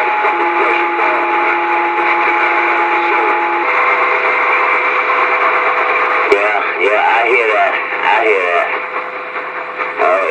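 Two-way radio receiver hissing with static and steady whistling carrier tones; a higher whistle stops about a third of the way in and a lower one takes over. After a click past the middle, distorted, warbling voices come through the static.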